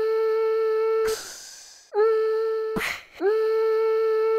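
Looped background music: held, hum-like notes at one steady pitch, each sliding up briefly into the note, alternating with a short noisy whoosh, the phrase repeating identically every few seconds.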